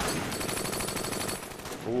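Sustained rapid gunfire from a WWII battle scene's soundtrack: many close, quick shots run together in a continuous stream, laid down as suppressive fire.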